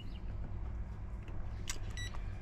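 A steady low rumble, with a light tap near the end followed by a short high electronic beep from a NanoCom diagnostic unit as a menu option is pressed on its touchscreen.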